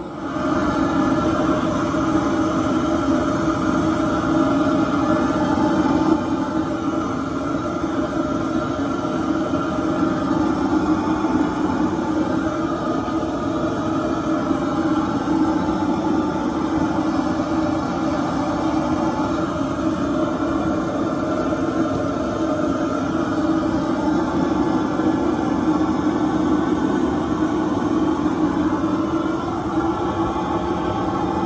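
Propane burner of a Bayou Classic four-and-a-half-gallon gas fryer running under full flame, a steady loud rumbling roar, heating the oil toward frying temperature.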